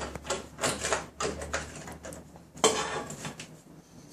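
Small sheet-metal cover plate being taken off the back of an RF Armor shield: a run of light metal clicks and rattles, with a louder clack about two and a half seconds in.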